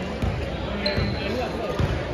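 Basketball dribbled on a hardwood gym floor: three bounces a little under a second apart, with voices in the hall.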